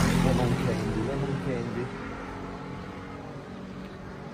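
A motor vehicle passes on the street. Its engine is loudest at first, then fades away over about two seconds with a slight drop in pitch, leaving low street background.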